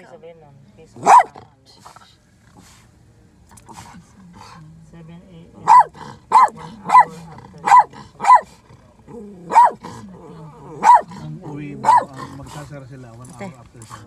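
Small white fluffy dog barking in short, sharp yaps: one bark about a second in, then a run of about eight barks, the first five close together and the rest about a second apart. A low steady hum from the vehicle runs underneath.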